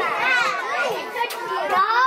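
A busload of young children chattering at once, many high voices overlapping, inside a school bus.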